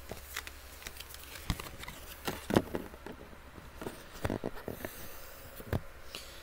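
Cloth rustling and small handling clicks as a printed T-shirt is moved and held up close to the microphone, irregular and loudest about two and a half seconds in.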